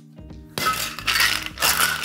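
Ice cubes rattling hard inside a stainless steel cocktail shaker tin as it is shaken. The rattle starts about half a second in and stops right at the end.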